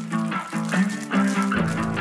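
Background music with a steady beat; a low bass line comes in about three-quarters of the way through.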